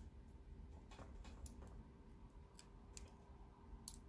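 Near silence broken by a few faint, sparse metallic clicks from a brass lock plug being turned in its cylinder housing while a follower is pushed through.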